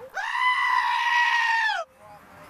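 A black-headed sheep bleating once, a long, loud, high call that holds steady, then drops in pitch just before it cuts off.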